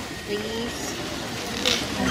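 Dolphins vocalizing at the surface on the trainers' cue, quietly. There is a short low squeak early on and a brief hissing burst near the end, over faint crowd murmur.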